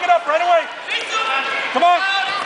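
Shouting voices, several and fairly high-pitched, with one long drawn-out shout in the second half.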